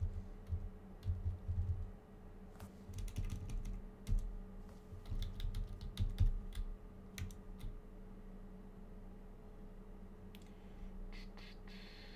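Typing on a computer keyboard: irregular runs of keystrokes over roughly the first eight seconds, then only a few scattered taps. A faint steady hum runs underneath.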